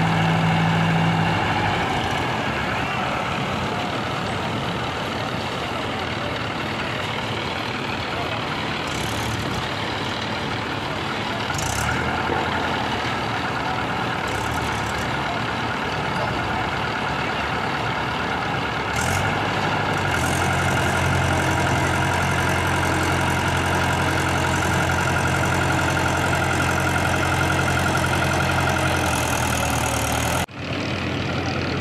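Heavy diesel tractor engine running steadily. Its low note shifts about two seconds in, and again near twenty seconds, where it grows a little louder.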